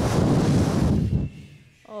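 People blowing out hard to imitate wind: a rushing, breathy hiss that dies away about a second and a half in.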